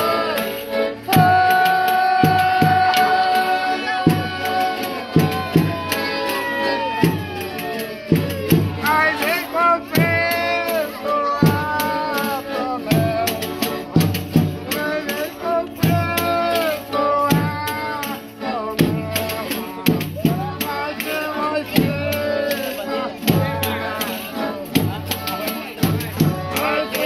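Folia de Reis folk ensemble playing and singing: acoustic guitars strummed under long, high sung lines that glide from note to note. A tambourine and drum keep a steady beat, with an accordion in the group.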